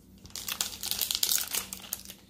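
Plastic-foil wrapper of a baseball card pack crinkling in irregular crackles as hands handle it and tear it open.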